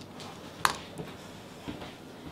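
Quiet kitchen handling sounds as a glass mixing bowl is picked up and carried: one sharp click about a third of the way in, then a couple of softer taps.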